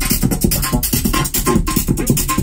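Electronic music played live on a modular synthesizer and mixer rig: a fast, busy rhythm of short hits with a short high blip repeating about every half second.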